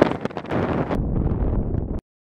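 Strong desert wind blowing over a sand dune and buffeting the microphone: a few sharp gusts, then a steady low rush. It cuts off suddenly at the end.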